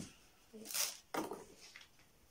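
A few short knocks and scrapes from a wooden easel being handled, the loudest a brief scrape just under a second in.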